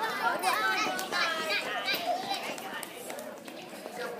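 A crowd of schoolchildren chattering and calling out at once, many high voices overlapping.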